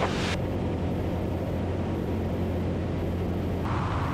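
Zenith CH-750 Cruzer's piston engine and propeller droning steadily in cruise flight, heard from inside the cabin.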